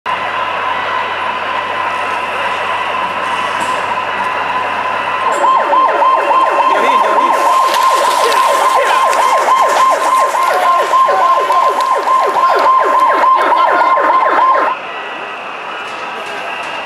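A siren holding a steady high tone for about five seconds, then switching to a fast warbling yelp, rising and falling several times a second, which cuts off about a second before the end.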